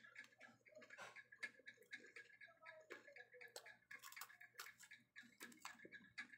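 Faint, irregular crunching clicks of a biscuit being chewed close to the microphone, over a faint steady high-pitched tone.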